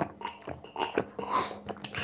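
Last few gulps of juice being swallowed from a glass mug, with small mouth sounds, then a sharp knock near the end as the glass mug is set down on a wooden table.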